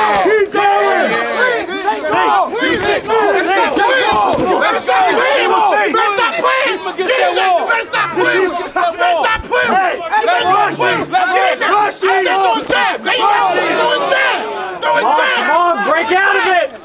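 Crowd of spectators yelling and cheering over one another, loud and unbroken, with no single voice standing out.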